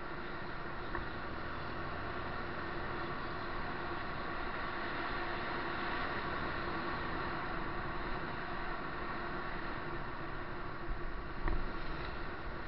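A vehicle riding along a road: steady engine and road noise, with a low thump shortly before the end.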